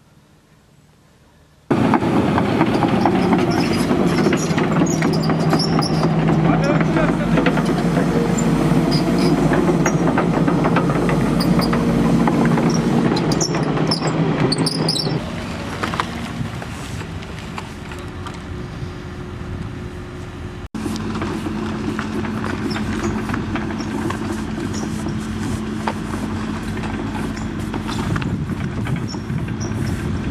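Diesel engine of an excavator running with a steady low drone, with people's voices over it. The sound cuts in abruptly about two seconds in and drops in level about halfway through.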